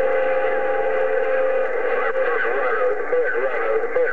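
President HR2510 radio tuned to 27.085 MHz, receiving a CB signal through its speaker: a steady whistle tone for the first couple of seconds, then a garbled, warbling voice through the static.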